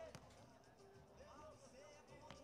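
Near silence: faint, distant voices of the crowd and people around the sand court, with one faint knock just after the start.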